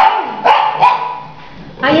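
A dog giving two short, sharp barks, about half a second and a second in.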